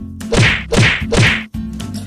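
Edited-in sound effects for an animated title card: three quick whip-like hits, each a hiss with a falling pitch, about half a second apart. A few sharp clicks over a low steady tone follow them.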